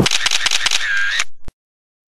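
End-card sound effects: a quick run of sharp clicks like a camera shutter, then a brief chirping tone. The sound cuts off abruptly to silence about one and a half seconds in.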